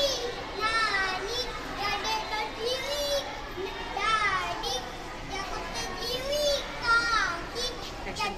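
A young boy reciting a Sindhi nursery rhyme aloud, in phrases whose pitch rises and falls, with short breaks between them.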